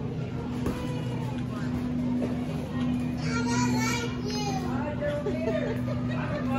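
Steady low electrical hum of supermarket freezer cases, with indistinct high-pitched voices, a child's among them, from about three seconds in.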